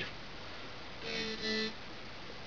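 Two short musical notes of the same pitch, one right after the other, about a second in, heard through a small speaker playing the DJ software's audio.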